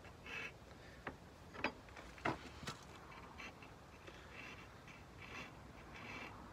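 Hand file worked over a metal sword-hilt fitting clamped in a bench vise: a series of short, faint rasping strokes at an uneven pace, with a few sharper clicks in the first three seconds.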